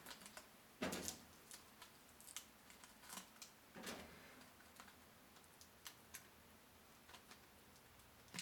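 Faint, irregular clicks and crinkles of a plastic soda bottle being handled, its screw cap being turned loose.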